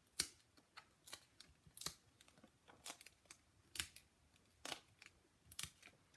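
Faint, irregular little clicks and ticks of foam adhesive dimensionals being peeled off their paper backing sheet and pressed onto cardstock.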